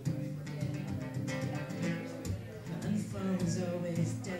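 Acoustic guitar being strummed, with a man singing along into a microphone.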